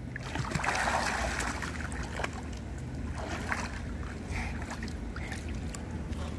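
Pool water splashing as a swimmer ducks under for a front flip, loudest about a second in, then settling into quieter lapping and sloshing. A steady low rumble runs underneath.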